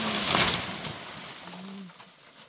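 Dry banana leaves rustling and crackling, loudest about half a second in and dying away over the next second and a half.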